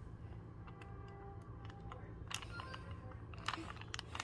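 A 3x3 Rubik's cube being turned by hand: faint, irregular plastic clicks as its layers rotate, with a few sharper clicks in the second half.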